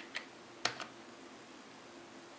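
Computer keyboard keys being pressed: four quick clicks within the first second, the third the loudest.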